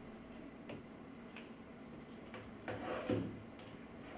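Scattered light clicks and knocks of equipment being handled on a table, with a short, louder clatter about three seconds in.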